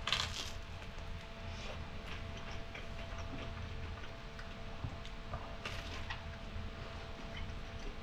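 A person biting into toasted crusty bread right at the start, then chewing it with small crunches and wet mouth sounds. A faint steady hum runs underneath.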